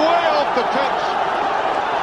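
Football stadium crowd cheering, a steady dense roar of many voices, with a few separate shouts standing out in the first second.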